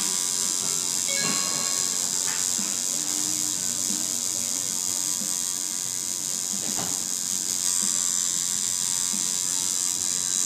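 Coil tattoo machine buzzing steadily as the needle works colour into skin, with music playing in the background.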